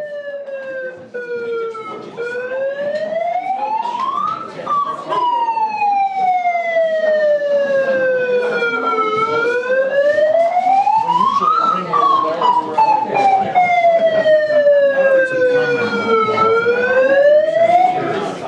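A siren wailing slowly up and down, in long rises and falls a few seconds each, growing louder over the first few seconds. Voices and scattered knocks sound underneath it.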